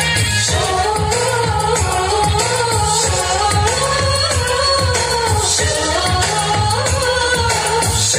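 Hindi film-style dance song playing loud, a singing voice carrying the melody over a steady low beat.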